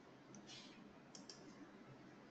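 Near silence: faint room tone with a few short, faint clicks.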